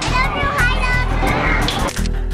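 A young child's voice and children's chatter over loud background music and arcade din.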